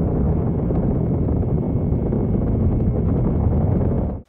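Saturn V rocket launch: a loud, steady, deep rumble of the engines at liftoff, with no distinct tone.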